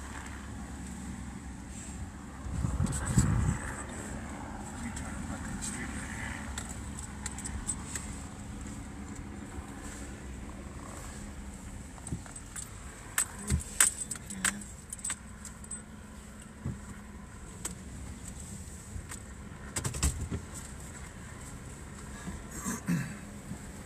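Vehicle driving, heard from inside the cab: a steady low engine and road hum, with a louder rumble about three seconds in and scattered clicks and rattles.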